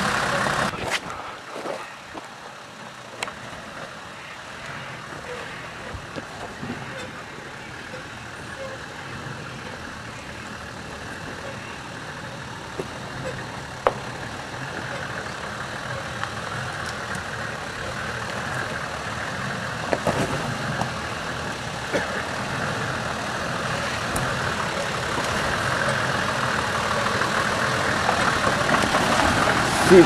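Four-wheel-drive engines running at low speed on a rocky dirt track. Faint at first, they grow steadily louder as a vehicle approaches. A few sharp knocks come through.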